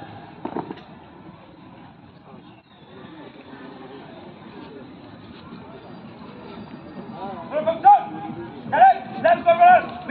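A single sharp knock about half a second in, then low background murmur, then near the end a run of loud, long-drawn shouted drill commands.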